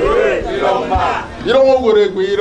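A man calling out loudly into a handheld microphone, in drawn-out exclamations that rise and fall in pitch, with no English words picked out.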